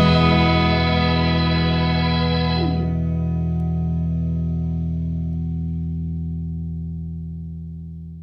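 The song's final chord on an electric guitar through effects, held and slowly dying away. The brighter upper part drops out about three seconds in, and the low notes fade toward silence near the end.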